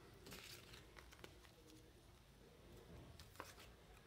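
Near silence, with a few faint rustles and small clicks of trading cards and a plastic card holder being handled.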